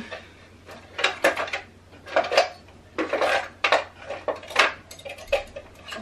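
Small hard objects and tools clattering and clinking in repeated bursts as someone rummages through an assorted collection to find an awl.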